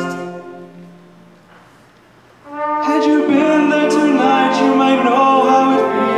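Orchestral music: a held note dies away during the first second, a quiet gap follows, and the orchestra comes back in about two and a half seconds in with sustained chords and a moving melody.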